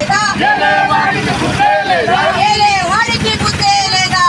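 A group of protesters loudly chanting slogans together, led by a woman shouting into a handheld microphone.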